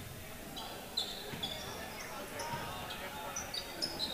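Faint gym sound of a basketball game: sneakers squeaking on the hardwood court in many short high chirps, with a single thump about a second in.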